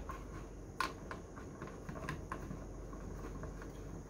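A few faint clicks and taps of handling as a spigot and its gasket are fitted through the hole in a plastic bucket wall, the clearest about a second in, over a low steady hum.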